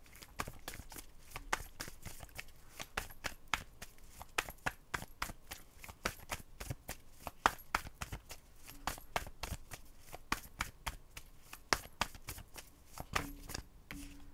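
A tarot deck being shuffled by hand: an irregular run of sharp card clicks and slaps, about four a second.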